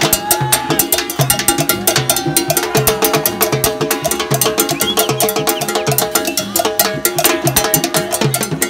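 Salsa music with drums and percussion keeping a steady, busy beat over a repeating bass line.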